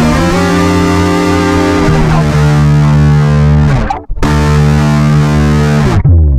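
Distorted electric guitar and bass playing held chords, broken by a sudden split-second stop about four seconds in before the chords come back.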